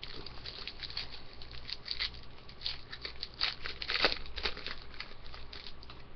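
A foil hockey card pack wrapper being torn open and crinkled by hand. Irregular sharp crackles run throughout and are loudest about four seconds in.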